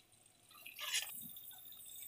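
Steel spoon stirring thick masala paste in a kadhai: a soft wet squish just before a second in, then a faint frying hiss as the paste cooks.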